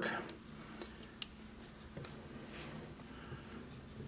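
Faint handling sounds of hand knitting: bamboo knitting needles and a cable needle clicking lightly against each other, with one sharp click about a second in.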